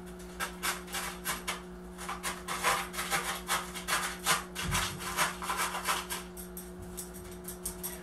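A chopstick jabbed again and again into gritty lava-rock and pumice bonsai soil: an irregular run of short crunching scrapes, several a second, as the stones are punched down around the azalea's roots to close the air pockets and settle the tree. A steady low hum sits underneath.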